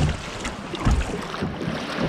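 Choppy water slapping and splashing against a kayak's hull, with wind buffeting the microphone in a couple of low thumps.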